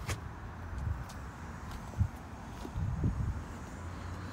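Low, steady vehicle rumble, with a sharp click just after the start and a short thump about two seconds in.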